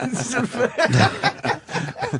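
Men talking with snickering and chuckling laughter mixed in.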